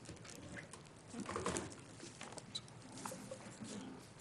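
Faint scattered clicks and rustles of people shifting in chairs and handling papers at a meeting table, a little busier about a second and a half in.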